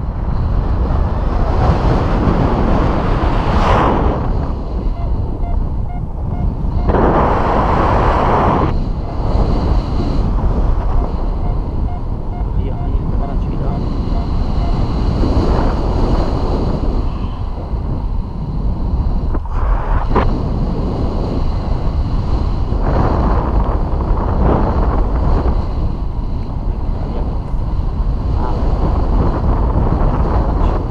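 Wind buffeting the microphone of a camera carried by a paraglider in flight. It is a loud, steady rush that swells and eases in gusts.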